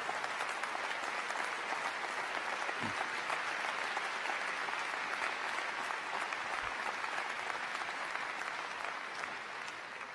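A large seated audience applauding in a big hall, a steady wash of clapping that eases off slightly near the end.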